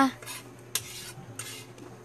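A few short, light clicks and clinks of small hard objects, about three in two seconds, over a faint steady low hum.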